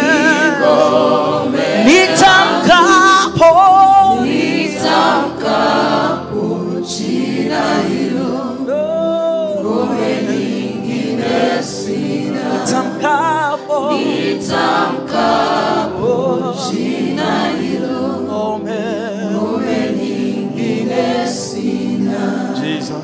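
Gospel worship song sung slowly into a microphone by a male worship leader, with long held, wavering notes and others singing along.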